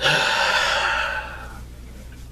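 A man's long sigh, a breathy exhale through an open mouth that starts suddenly and fades away over about a second and a half.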